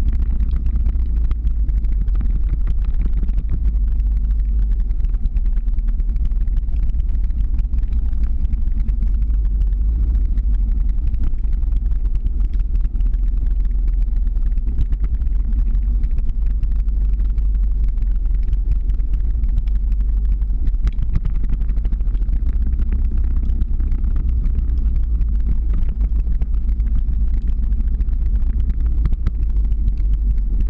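Motor vehicle driving slowly uphill just ahead of the skater: a steady, loud low rumble of engine and road noise that holds without a break.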